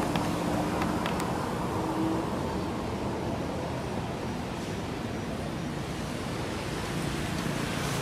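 Steady roadside background noise: a constant hiss and low rumble with no distinct events.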